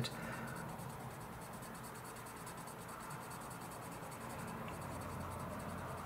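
Crayola coloured pencil scribbling on paper, laying down a colour swatch; a faint, even scratching.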